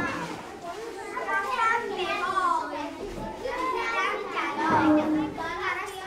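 Children's voices chattering and calling out, several at once.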